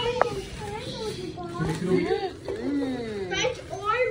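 Young children's voices chattering and exclaiming, not as clear words, with a single sharp click just after the start.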